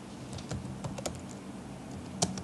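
Typing on a computer keyboard: an irregular run of quick key clicks as a word is typed out.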